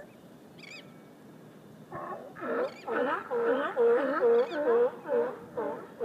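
Sea lions barking: a fast run of repeated barks, about two or three a second, starting about two seconds in.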